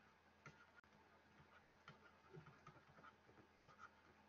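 Near silence with faint, irregular ticks and scratches of a stylus writing on a tablet screen.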